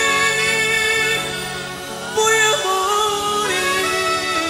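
Live band music: a melody of long held notes over steady backing chords, with a new phrase starting about two seconds in.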